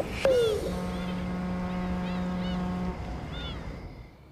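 A ship's horn sounding one long steady low blast that stops abruptly, with birds chirping in short rising-and-falling calls.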